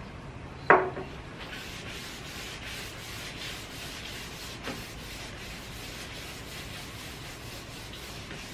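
Paper napkin rubbing wood restore finish into a wooden tabletop in repeated scrubbing strokes, with a sharp knock just under a second in.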